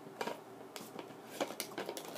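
Plastic water bottle being opened and handled: a few light, separate clicks and taps of plastic parts.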